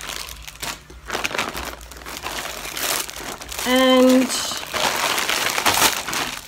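Plastic packaging crinkling and rustling as it is handled and unwrapped, with a short hummed vocal sound about four seconds in.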